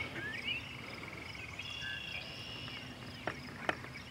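Quiet outdoor ambience at a pond: scattered high chirps, a brief trill near the start and a short steady high note about halfway through, from small wild animals. Two faint clicks come near the end.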